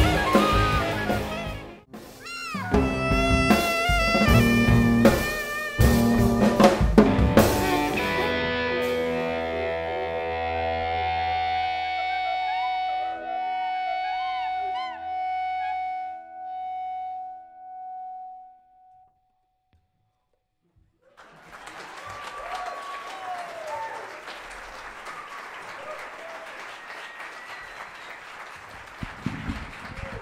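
A small jazz band of saxophone, upright bass, drum kit and electric guitar plays the closing bars of a tune: loud accented hits, then a long held final chord that fades out about eighteen seconds in. After a couple of seconds of silence, the audience applauds.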